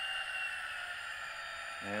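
TCS WOWSound decoder in a model diesel locomotive playing its prime mover sound through the locomotive's small speaker, notching back down one throttle notch as the speed step is lowered. It is a steady, thin, high-pitched sound, with one tone fading out shortly after the start.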